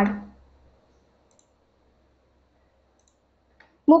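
A near-silent pause holding two faint clicks of a computer mouse, about a second and a half in and again just before speech resumes.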